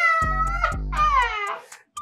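A man's very high-pitched laughter, rising and falling in long drawn-out squeals, over background music with a steady bass line. The sound cuts out to silence just before the end, and the laughter is called "that's how bad you were laughing".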